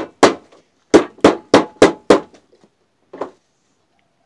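Hammer blows on a wooden press frame packed with reed stalks, beating the pressed reeds down to settle them while a reed beehive wall is being made. Six sharp blows at about three a second, then they stop, with one fainter knock near the end.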